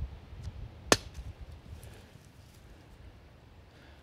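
A brick dropped from chest height strikes an empty XTECH MAG47 polymer AK magazine lying on grass: one sharp impact about a second in. The blow nicks the magazine's raised ribbing without breaking it.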